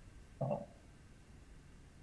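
A man's single short hesitant 'uh' about half a second in, heard over a video-call line, then near silence with a faint low hum.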